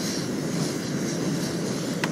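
Small folding portable propane camping stove burning with an open blue flame, giving a steady, even rushing hiss.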